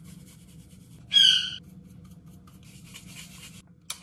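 A seasoning shaker shaken over a bowl: soft, fine rattling of the spice sprinkling out, in two spells. About a second in, a brief high-pitched squeak is the loudest sound.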